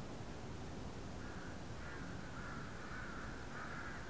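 A crow cawing, a run of about five short calls starting about a second in, over a steady low background rumble.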